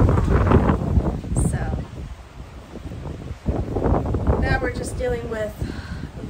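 Strong storm wind buffeting the microphone, a low rumble that eases off for a moment in the middle, under a woman talking.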